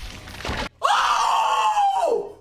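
Anime sound effect of bone crackling as a fighter's wrist is crushed in a grip, cutting off after about half a second, followed by a man's loud, drawn-out scream that slowly falls in pitch.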